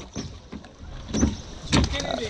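Rowing boat being rowed on the river: water noise around the hull and oar strokes, with two brief, sharper strokes in the second half.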